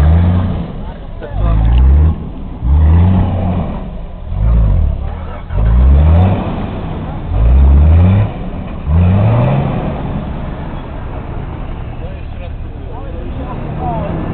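Nissan Patrol 4x4's engine revved hard in about seven short rising bursts, roughly one every second and a half, as the wheels spin trying to drive the stuck vehicle out of deep mud. After about nine seconds it settles into lower, steadier running as the vehicle moves on.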